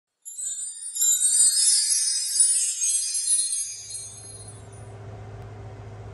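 A short, high-pitched intro jingle that fades out about four seconds in. Under it, the steady hum of an electric fan running on high takes over.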